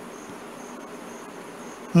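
A pause between sentences holds steady background hiss. Over it a faint, high-pitched insect-like chirp repeats about two to three times a second.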